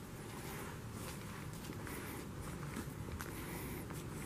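Footsteps of a person walking while carrying a handheld camera, a few soft, uneven steps over steady low background noise.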